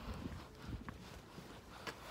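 Faint footsteps on concrete paving slabs, with a few light clicks and scuffs.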